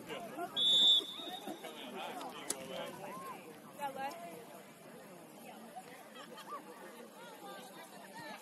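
A referee's whistle blows one short, shrill blast about half a second in, over scattered voices of players and spectators calling and chatting.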